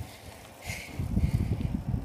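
Wind buffeting a phone's microphone on a moving bicycle: a low, gusty rumble that grows louder about halfway through, with a brief hiss just before it.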